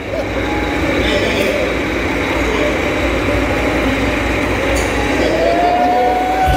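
The soundtrack of a video playing over a gym's loudspeakers, blurred by the hall's echo, with voices mixed in and a steady low hum.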